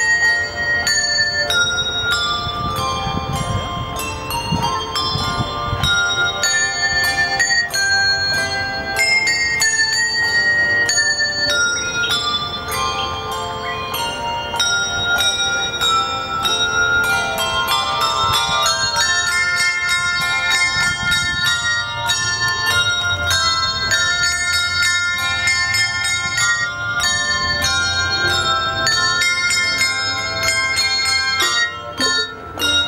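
Handbell ensemble playing a piece together: many tuned handbells struck in quick succession, their notes ringing on and overlapping into chords.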